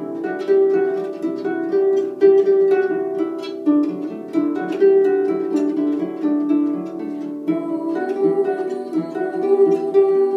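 Celtic lever harp played solo, an improvisation: a continuous flow of plucked notes, mostly in the middle register, each left to ring on into the next.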